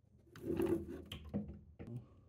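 Heavy-duty steel ball-bearing drawer slide pushed along its track: a rolling metal scrape lasting about half a second, followed by a few light clicks and knocks.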